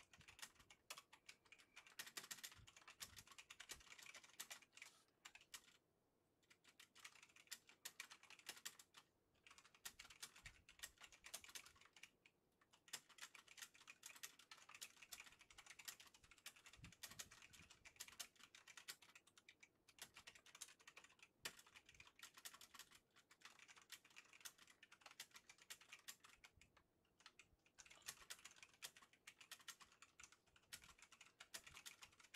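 Faint rapid clicking in irregular runs, broken by short pauses.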